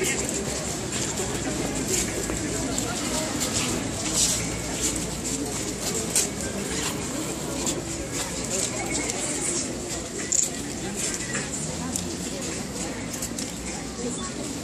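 A crowd of people talking among themselves, a steady babble of many voices with no single clear speaker, broken by scattered short clicks and a brief louder sound about ten seconds in.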